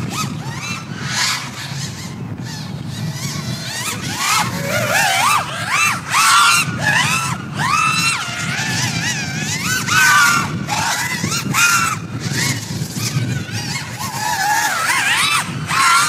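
A 5-inch FPV racing quadcopter on 4S with Hyperlite 2207 2522 kV motors, its motors whining as it laps. The pitch rises and falls with each throttle change, with a low rumble of prop wash underneath.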